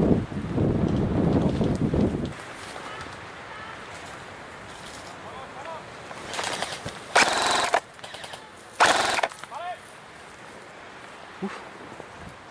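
Two short bursts of full-auto airsoft gun fire, a rapid rattle, about 7 and 9 seconds in, the second shorter. Before them, for about two seconds, comes rumbling handling and rustling noise as the camera moves through the brush.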